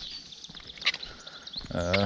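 Faint outdoor background with small bird chirps and a brief click about a second in, then a man's short drawn-out vocal sound near the end, a hesitation before speaking.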